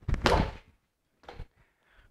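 Gloved punches landing on the foam-filled, uninflated ball of an Everlast Hyperflex Strike reflex bag, each a dull thunk: a strong one at the start and a fainter one about a second and a quarter later. The shots come singly and well apart, since the spring-mounted bag rebounds slowly.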